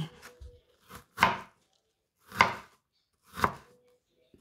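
Wide-bladed cleaver chopping a red onion on a wooden cutting board: three firm chops about a second apart, with a lighter tap just before the first.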